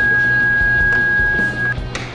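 One long steady electronic beep from a door access reader, held for nearly two seconds while the entrance door is unlocked, then cutting off suddenly. A sharp click follows just after it.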